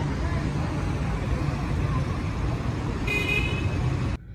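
Steady low rumble of vehicle and traffic noise outdoors, with a brief high-pitched horn toot about three seconds in.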